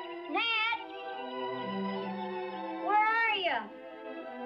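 Two drawn-out, wavering high-pitched calls, the second louder and falling away at its end, over steady background music.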